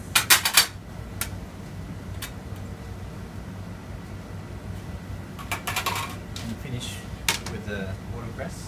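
Stainless steel trays and a wire rack clinking and clattering against a stainless steel counter: a quick run of metal clinks at the start, a few single clicks, and another run of clinks about five and a half seconds in. A steady low hum runs underneath.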